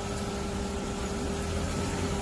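A car engine idling steadily: a low rumble with a constant hum over it.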